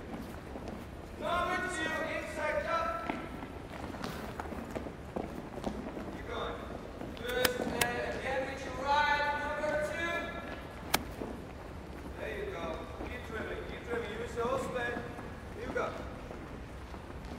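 Several children dribbling soccer balls on a wooden gym floor, with quick ball touches and a few sharp knocks, the middle one about eleven seconds in, under indistinct voices echoing in the hall.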